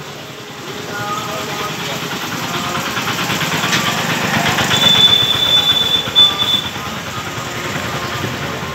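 Busy street-fair crowd chatter mixed with motorcycle traffic. It grows louder through the middle as vehicles pass close. A high, steady tone sounds for about two seconds past the midpoint.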